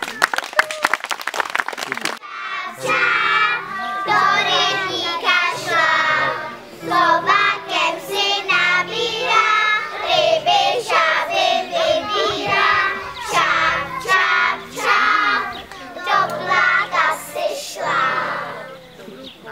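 A group of young children singing a song together, accompanied by an electronic keyboard playing sustained chords. The song is preceded by about two seconds of quick clapping at the start.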